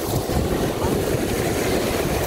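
Wind buffeting the microphone with a low rumble, over the steady wash of surf.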